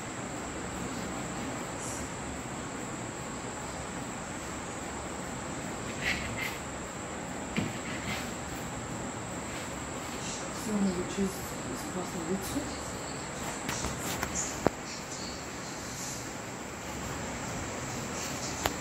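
A steady high-pitched whine over a constant hiss, with a few light clicks and a brief faint murmur of a voice about ten seconds in.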